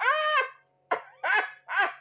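A woman laughing in a few separate high-pitched bursts.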